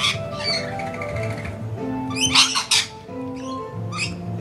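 Background music with steady held notes, over harsh screeches from a flock of rainbow lorikeets. The screeches come as short bursts at the start and loudest in a quick run of several about halfway through.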